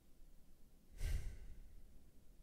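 A man's short sigh, breathed out close into the microphone about a second in and fading over half a second.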